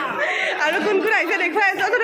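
Speech only: people's voices talking and chattering in a large hall.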